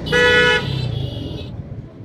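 A vehicle horn sounds one short, steady-pitched toot of about half a second near the start, over the low rumble of traffic and engines. A fainter, higher-pitched tone follows about a second in.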